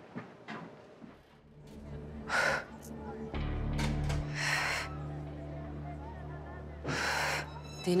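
A woman gasping hard for breath three times, a couple of seconds apart, as she jolts awake from a nightmare, over a low, sustained music drone.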